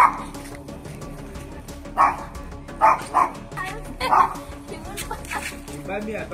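A dog barking in single short barks, about six of them, spaced irregularly across the few seconds.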